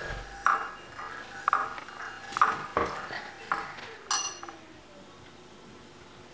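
A metal spoon clinking against a white ceramic bowl while stirring soup: about six sharp clinks over the first four seconds, then the clinking stops.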